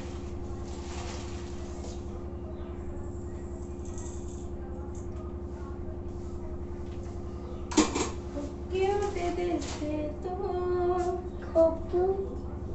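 A steady low hum with no identifiable source throughout. About eight seconds in there is a single sharp knock, followed by a voice rising and falling in pitch for a few seconds.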